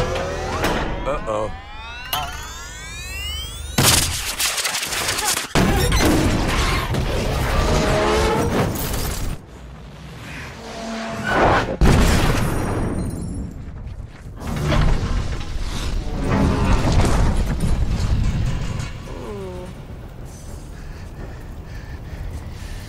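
Loud music with heavy bass blasting from a vehicle's sound system, then an explosion boom with smashing and shattering about halfway through, in the manner of a film action soundtrack.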